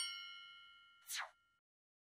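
A synthesized bell-like chime struck once, ringing with several steady tones and fading out over about a second and a half, joined about a second in by a short whoosh falling steeply in pitch. These are animation sound effects marking an on-screen step in a worked equation.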